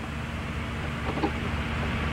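Steady low rumble and hiss of background noise on an old broadcast audio track, with a faint steady hum. A faint, distant voice comes through briefly about a second in.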